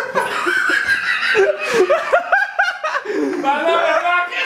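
People laughing, with a run of short quick laugh pulses in the middle.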